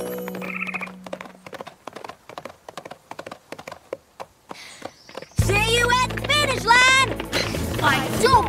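Cartoon hoofbeats: a quick, uneven run of light taps as a pony runs and trots on a dirt path, after a held music note fades. About five seconds in, cheerful music starts, with a high voice singing a wordless tune over it.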